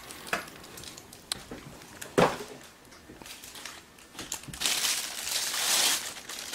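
Clear plastic bag crinkling and rustling as a handheld radio scanner is unwrapped from it, with one sharp tap about two seconds in and denser, steadier crinkling near the end.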